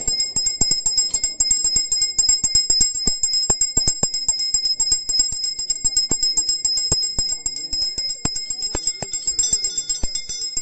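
A hand-held puja bell rung rapidly and without pause during worship, a fast, even run of high, bright clangs. More ringing tones join near the end.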